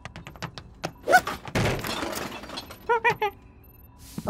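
Cartoon sound effects: a run of light ticks, then a noisy crash about one and a half seconds in that lasts about a second, followed by three short pitched vocal calls from an animated character.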